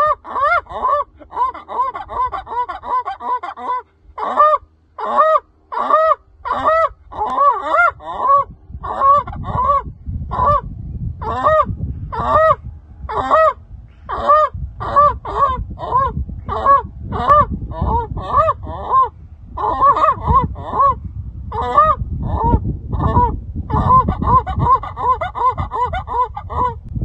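A man imitating geese with his voice alone, no call: quick runs of goose honks, each note rising and falling in pitch, about two or three a second, in bursts with short breaks.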